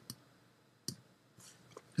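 One sharp click at the computer about a second in, with a few fainter clicks around it, over quiet room tone.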